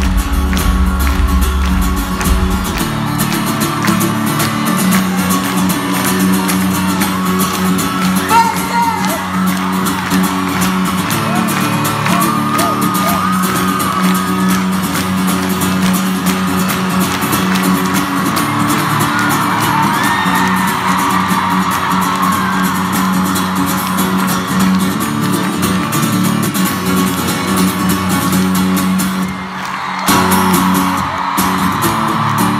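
Live band music played through an arena's sound system: a sustained, held instrumental passage with crowd voices and whoops over it. A deep bass note drops out about two seconds in.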